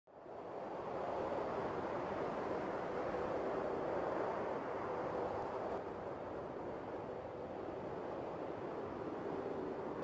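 Steady outdoor ambient rush that fades in over the first second and holds even throughout.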